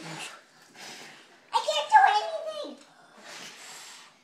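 Children blowing at birthday cake candles in repeated short breathy puffs, with a voice calling out loudly for about a second in the middle.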